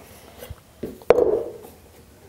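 Hand tools handled on a workbench: a soft knock, then a sharp clack about a second in that rings briefly and fades.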